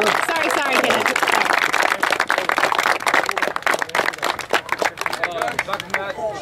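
A group of people clapping together, with shouts and cheers over it; the clapping thins out near the end.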